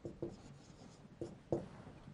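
Marker writing a word on a whiteboard: a few faint, short strokes, the clearest about a second and a half in.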